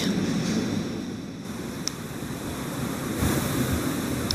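Steady outdoor background noise, a low rumble with hiss like wind on a microphone. It dips slightly about a second in and swells again near the end, with one faint tick partway through.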